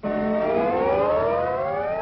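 A siren-like tone rising steadily in pitch over a steady low note, played as the cartoon's opening title sound.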